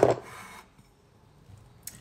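A single sharp knock at the very start, as a hand sets something down on the kitchen worktop, followed by a short rubbing scrape; a faint click comes near the end.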